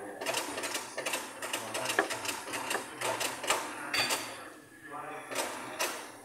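Tyre-fitting work at a tyre changer machine: a run of irregular metallic clicks and rattles, with voices in the background.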